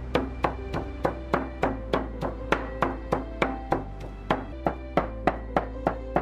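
A steel cleaver chopping raw pork on a thick wooden chopping block, mincing it into dumpling filling: a steady run of sharp chops, about three a second. Background music with sustained notes plays underneath.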